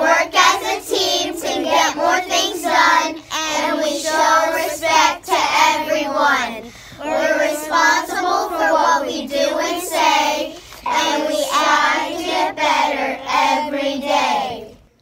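A group of children reciting the rhyming Panther Pledge together in unison, phrase by phrase with short pauses for breath.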